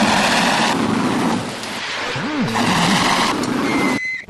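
Cartoon rocket lifting off: a loud, steady rushing blast of rocket exhaust. A short wordless voice exclamation rises and falls a little past halfway.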